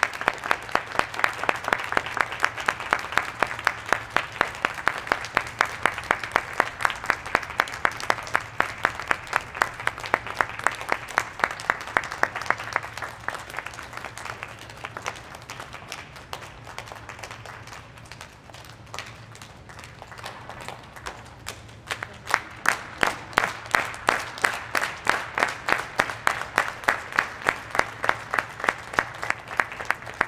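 Audience clapping in unison to a fast, steady beat, ringing in a large hall. The clapping fades somewhat about halfway through, then swells again.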